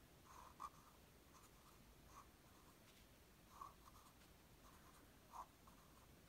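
Faint scratching of a felt-tip marker writing on paper, a series of short strokes.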